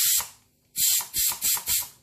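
Pressure cooker's steam-release valve being opened by hand to let the pressure out: a loud hiss of escaping steam that cuts off just after the start, then, after a short pause, four quick spurts of steam.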